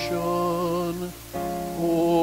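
Hymn music with steady held notes that change pitch in steps, with a brief break a little past a second in.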